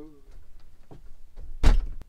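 A camper's interior door shut with a loud bang about a second and a half in, after a few light knocks.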